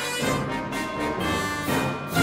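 Background music: an orchestral piece with brass.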